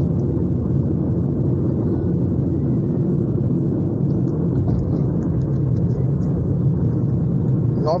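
Steady low rumble of a car's road and engine noise as it drives, heard from inside the cabin.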